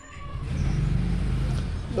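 A motor vehicle engine that grows louder over the first half second and then runs steadily as a low drone.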